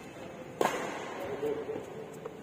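A badminton racket hitting the shuttlecock once, about half a second in: a single sharp crack that echoes briefly in a large indoor hall.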